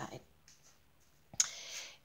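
A single sharp click just past the middle, followed by a short, fading hiss of about half a second, in an otherwise quiet pause.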